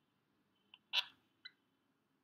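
Near silence broken by three short clicks about a second in, the middle one the loudest.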